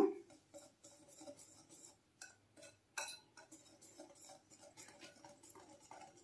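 Wire whisk mixing dry flour in a glass bowl: faint, irregular clicks and taps of the wires against the glass, the loudest about three seconds in.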